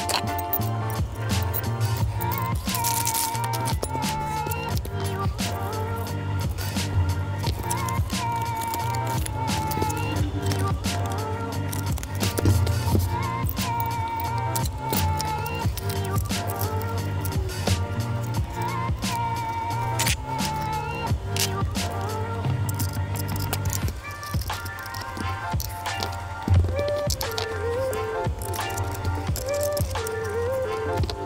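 Background music with a steady beat and a short melody that repeats every five or six seconds.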